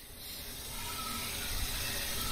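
Steady background hiss that grows slightly louder.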